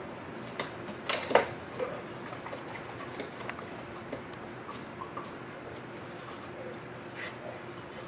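A few short clicks and taps, the loudest cluster about a second in, then lighter scattered ticks, over a faint steady hum.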